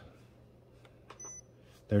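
Touch panel of a Beautiful 14-cup touchscreen coffee maker giving one short, high, faint beep about a second in as a button is pressed, after a couple of faint taps.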